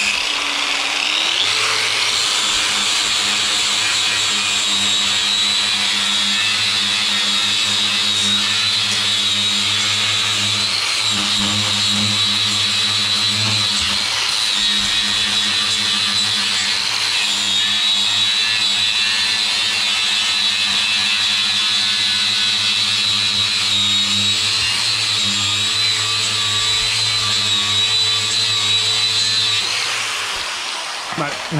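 Electric angle grinder running steadily with a high whine, its abrasive disc grinding body filler and paint off the steel of a car's inner wheel arch and chassis rail, throwing sparks. It winds down at the very end.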